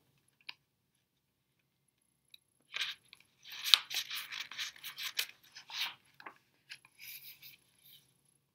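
Pages of a hardcover picture book being turned by hand: a few seconds of paper rustling and crinkling, with one sharper snap, starting about three seconds in.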